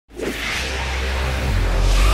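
Whoosh sound effect over a steady low bass, starting suddenly and swelling slowly louder as an electronic music intro builds.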